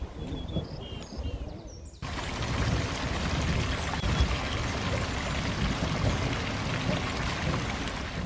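Water running steadily over rocks in a small garden stream, coming in suddenly about two seconds in after a quieter stretch of outdoor background.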